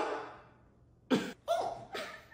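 A person coughing: a sharp cough right at the start, then two short coughs just after a second in.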